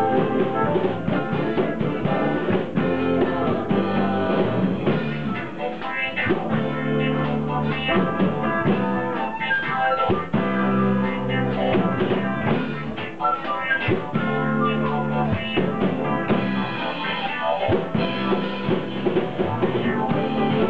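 Live band playing an upbeat pop song: electric guitar, bass and drum kit, with a flute line over them.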